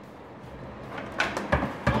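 A man bumping into a cramped cupboard's door and shelves as he squeezes in. After a quiet first second come several sharp knocks and thumps in quick succession.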